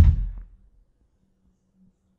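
A single loud, deep bang that starts suddenly and dies away within about half a second.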